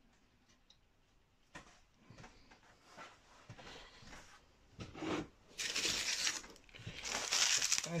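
Hands rustling and crinkling dry leaf litter, starting as scattered small crackles and growing into a louder crackly rustle over the last few seconds.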